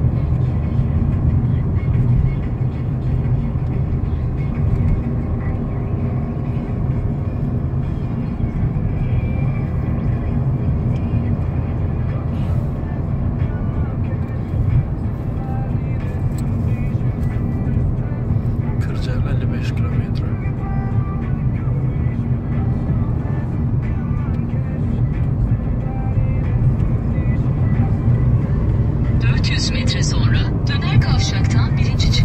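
Steady engine and road drone heard inside a moving car's cabin, with other sounds at a lower level on top.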